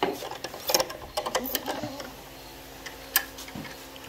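Small metal clicks and rattles of a barrel-bolt gate latch and a carabiner clipped through it being handled. A quick run of clicks comes in the first second and a half, and one sharper click near the end.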